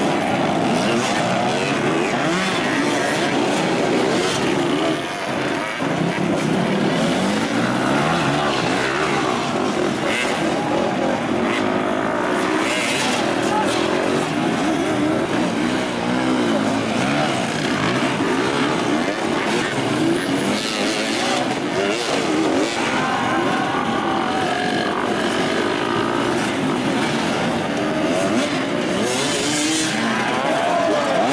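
Several dirt-bike engines revving at once under load on a steep hill climb, their overlapping pitches rising and falling constantly, with voices mixed in.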